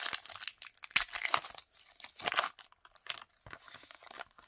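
Foil wrapper of a trading card pack being torn open and crinkled by hand: a run of irregular crackles, busiest in the first half with louder bursts about one and two seconds in, then thinning out.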